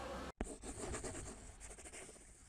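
Steady outdoor background noise cuts off abruptly; a sharp click follows, then a run of quick, scratchy, scribbling strokes that fade out, the sound effect of an animated logo being drawn.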